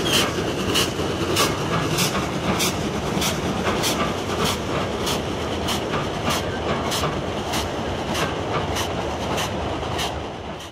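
Archive recording of a Gresley steam locomotive hauling an express train at speed: a steady rumbling roar with a sharp, regular clatter about twice a second.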